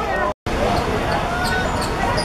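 Players' and onlookers' voices calling out over a five-a-side football game on a hard court, with short thuds and taps of the ball and shoes on the court surface. The sound cuts out for an instant just under half a second in.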